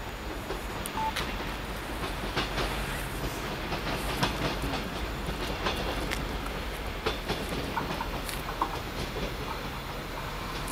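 A passenger train approaching along the track, a steady low rumble with scattered sharp clicks from the wheels over the rails.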